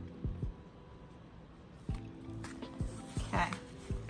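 Soft background music with low sustained chords, dipping quieter about half a second in and returning near the two-second mark. Over it, scattered light clicks and taps of oracle cards being handled and gathered up.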